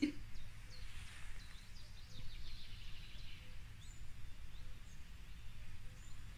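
Faint, scattered bird chirps over a low steady hum.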